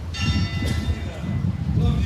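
A bell rings once just after the start, its clear high tones fading out over about a second, over low street noise.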